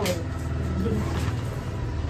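A steady low hum with the rustle of a large fabric garment bag being handled and opened, and a quiet voice about a second in.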